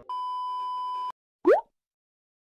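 Edited-in sound effects: a steady 1 kHz test-pattern beep lasting about a second, then, about a second and a half in, one short rising pop.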